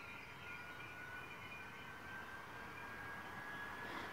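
Quiet room tone with a faint, thin high whine that slowly rises in pitch.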